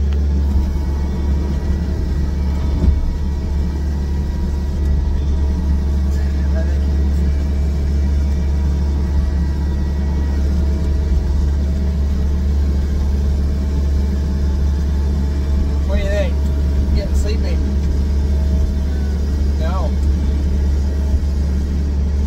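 Skid steer loader's engine running steadily, a constant low hum heard from inside its cab.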